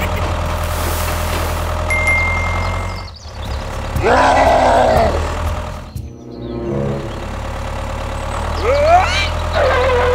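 Steady low engine hum for a toy tractor and its tipping trailer. It breaks off about three seconds in and again near six seconds, with a short louder sound of sliding pitch between the breaks and rising sweeps near the end.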